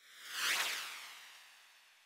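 A whoosh transition sound effect: a hissing swish that swells for about half a second, then fades slowly away.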